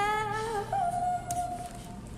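A young woman singing long held notes: one note, then a step up to a higher note about two-thirds of a second in, held steadily for about a second.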